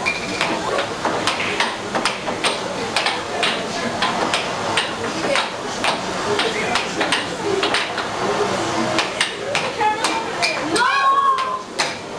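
Air hockey puck clacking off plastic mallets and the table rails in a fast, irregular rally of sharp hits. A short voiced shout breaks in about eleven seconds in.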